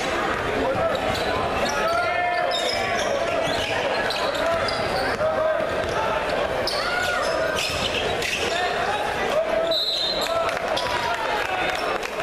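Gym crowd chatter and calls echoing through a large hall, with a basketball being dribbled and shoes squeaking on the hardwood court. A short referee's whistle sounds near the end as play is stopped.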